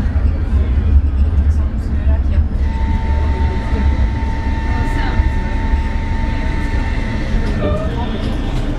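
Tram running slowly along street track, with a continuous low rumble from its running gear and motors. A steady high tone sounds for about five seconds in the middle, then fades.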